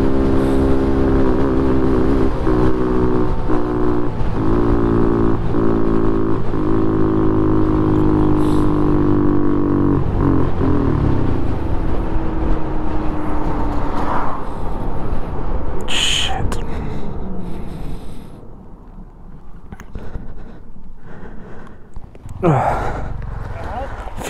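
Honda Monkey 125's small single-cylinder engine running at road speed with wind on the microphone, faltering with several brief dropouts. About ten seconds in it cuts out and its note falls away as the bike coasts to a stop: a stall that the rider takes for a loss of fuel.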